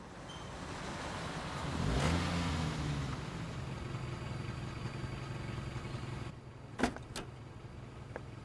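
Toyota Corolla Levin pulling in, its engine and tyre noise swelling about two seconds in, then the engine idling steadily. Two sharp clicks come near the end.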